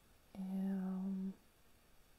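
A woman humming a single steady, level-pitched "mm" for about a second.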